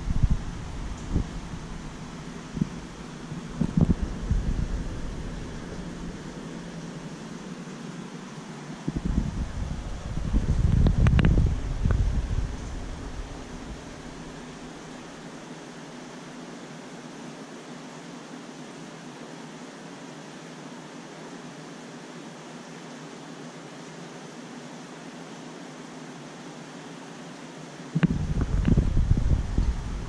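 Steady fan-like whir of running aquarium equipment, broken by bouts of low rumbling about ten seconds in and again near the end.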